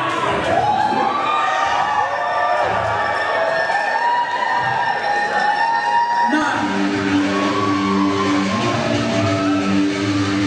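Audience cheering and whooping between songs, then about six seconds in the sound changes abruptly to an electric guitar playing a steady chord pattern as the next song starts.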